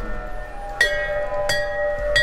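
A small round Western-style metal bell struck twice with a small striker, about a second in and again half a second later. Each strike rings on with the same steady note: a round bell gives the same sound wherever it is hit.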